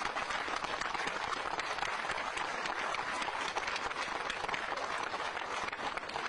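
A crowd applauding: many hands clapping steadily.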